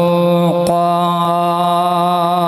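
A man's voice holding one long, steady chanted note into a microphone: the drawn-out final syllable of a melodic Arabic Quran recitation.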